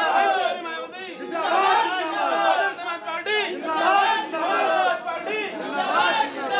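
Crowd chatter: many people talking over one another at once.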